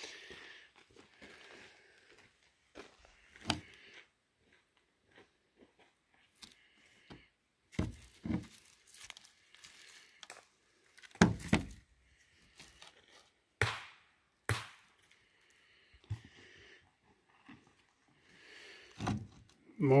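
Chalcopyrite ore samples being handled with work gloves and set down on a hard surface: scattered sharp knocks of rock, with glove and handling rustle between them.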